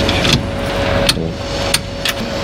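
A UAZ Bukhanka van's engine being cranked on the starter motor with a steady whine; it is hard to start, which is put down to a battery that may be run down.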